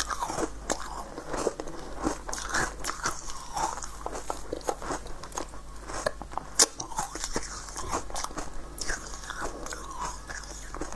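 Close-miked chewing and crunching of a crisp pink corn-cob-shaped sweet treat, a steady run of irregular crackles with one sharper crunch a little past halfway.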